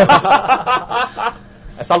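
Laughter, a run of quick chuckles that dies away after about a second. A man starts speaking near the end.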